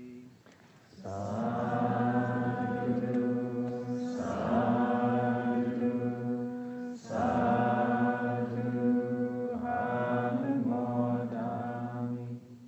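Buddhist devotional chanting, several voices in unison on a near-monotone. It comes in three long phrases, with short breaks about four and seven seconds in.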